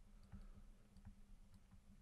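Near silence with a low steady hum and a few faint, scattered clicks of a stylus tapping on a pen tablet as numbers are written.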